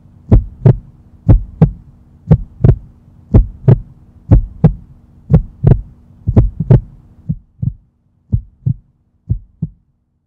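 A heartbeat rhythm of doubled thumps, about one pair a second, over a steady low hum. The hum stops about seven seconds in and the beats grow fainter after it.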